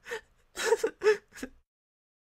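A cartoon character's voice making a handful of short gasping, whimpering breaths in the first second and a half.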